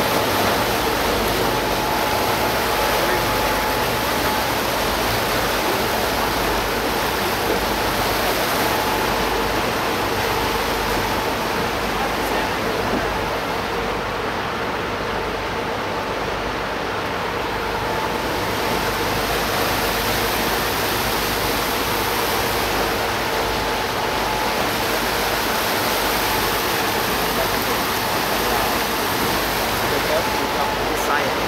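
Steady rushing noise of a sightseeing boat under way, water and air rushing past, with a faint steady hum running through it.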